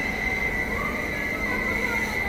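Steady running noise of electric trains standing at a station platform, with a constant high-pitched whine over a broad hum.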